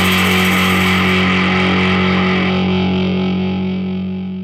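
A distorted electric guitar chord ending a punk rock song, held and left ringing. It fades slowly as its bright top end dies away.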